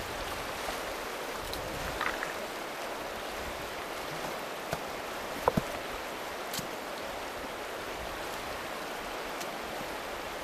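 A clear, stony river running steadily, a continuous rush of water over rocks, the river up after overnight rain. A few short sharp clicks, the loudest a pair of knocks about five and a half seconds in.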